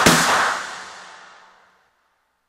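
A rock band's final cymbal crash, with the last chord under it, ringing out and dying away to silence about a second and a half in.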